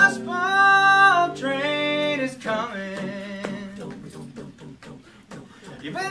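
Mixed male and female a cappella group holding a close chord for about two and a half seconds, a vocal imitation of a train whistle. Then a low steady bass note under a fast, rhythmic vocal chugging.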